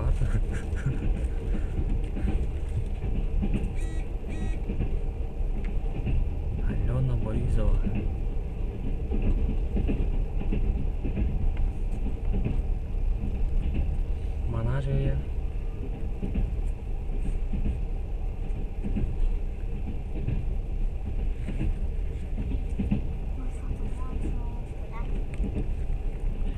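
Steady low rumble inside a standing passenger train carriage, with brief snatches of voices about seven and fifteen seconds in.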